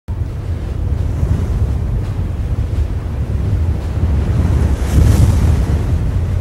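A loud, steady, wind-like rumble with a hiss above it: the sound effect of an animated title sequence. It swells about five seconds in, with the hiss rising.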